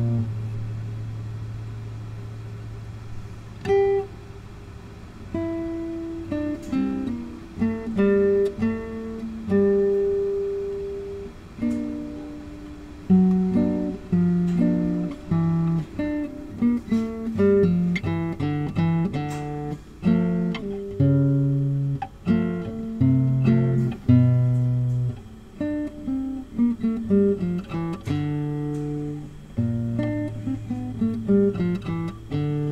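Solo nylon-string classical guitar played fingerstyle. A low bass note at the start rings and dies away, then single melody notes follow sparsely and pick up into quicker runs over bass notes past the middle.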